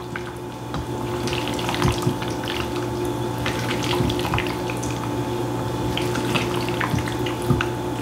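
Silicone spatula folding mayonnaise-dressed potato salad in a stainless steel bowl: soft wet squishing with scattered light clicks, gently and unhurried. A steady hum runs underneath.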